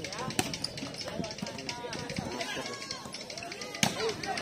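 Indistinct voices of several people talking and calling out around an outdoor volleyball court, with a single sharp smack near the end.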